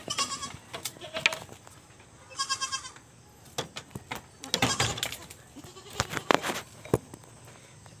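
Goats bleating: a short high bleat at the start, a longer wavering bleat about two and a half seconds in, and another about four and a half seconds in, with scattered knocks and clicks between them.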